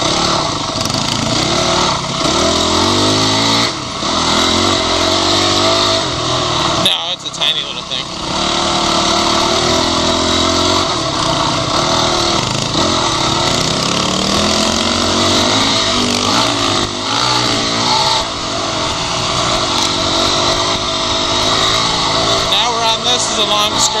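Dirt bike engine being ridden along a trail, its pitch rising and falling with the throttle, with a brief drop about seven seconds in.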